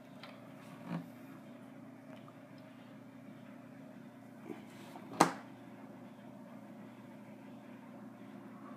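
Handling sounds from working with wires and a soldering iron at a wooden workbench: a couple of soft knocks and one sharp click about five seconds in, over a steady low hum of room tone.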